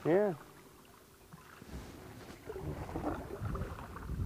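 Canoe paddling: irregular splashing and water sounds from paddle strokes that begin about a second and a half in, with low rumbling underneath.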